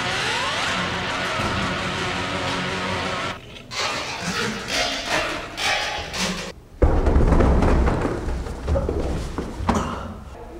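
Background music for about the first three seconds, then it drops out. About seven seconds in comes a sudden loud thud and a couple of seconds of tumbling noise: a person falling down a carpeted staircase.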